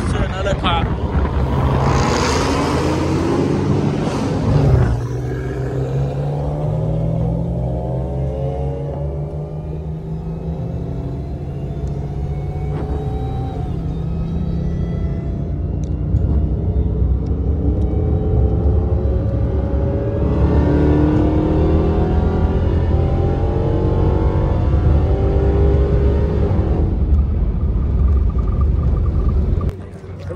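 A car engine running steadily at low revs, with indistinct voices talking in the background. A louder rush of noise about two to four seconds in.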